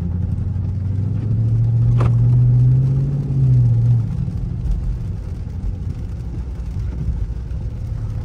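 Dodge Charger R/T's 5.7-litre Hemi V8 heard from inside the cabin, pulling away from a stop with its exhaust valves closed in eco mode. The engine note rises for a couple of seconds, falls back at an upshift about four seconds in, then settles into a steady cruise. A single click sounds about two seconds in.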